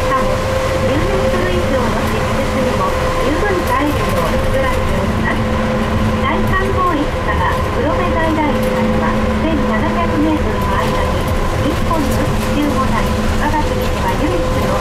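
Trolleybus running through the Tateyama tunnel, heard from inside: a constant low rumble with a steady electric whine, and passengers' voices faintly in the background.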